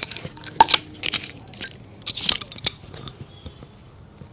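A cobbler's metal hand tools working a shoe's heel: a run of sharp, irregular clicks and taps that thins out over the last second.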